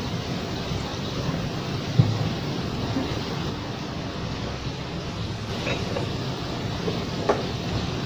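Water running steadily out of a large plastic bottle into a water dispenser's tank, with one small knock about two seconds in.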